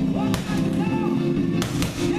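Rock music playing, with three sharp smacks of boxing gloves landing on focus mitts: one about a third of a second in and two in quick succession near the end.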